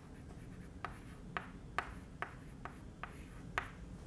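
Chalk writing on a blackboard: a faint series of short, sharp taps and scratches, about seven ticks at irregular spacing as letters are stroked onto the board.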